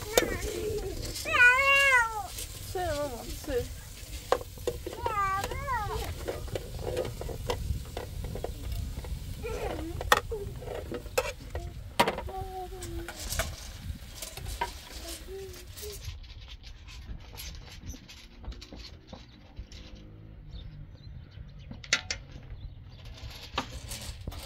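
A steel ladle stirring and knocking against a pot of vegetables frying over a wood fire, with sharp knocks now and then. Two high, wavering cries stand out, about a second and a half and five seconds in.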